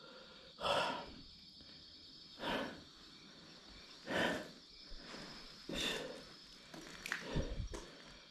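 A person breathing close to the microphone: five short, audible breaths at a steady pace of about one every second and a half to two seconds, with quiet in between.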